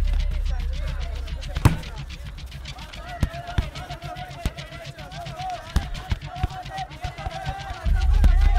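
Film soundtrack for barefoot football on a dirt pitch: sharp thumps at irregular intervals, fitting the ball being kicked, over a low bass drone that fades in the first seconds. From about three seconds in, a wavering voice-like melody runs over the thumps.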